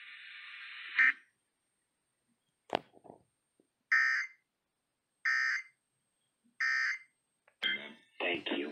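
Three short, identical bursts of Emergency Alert System digital data, about 1.3 s apart, heard through a radio's speaker: the End-of-Message code that closes the flash flood warning broadcast. Before them, a hiss cuts off with a short loud burst about a second in, and a single click follows shortly after.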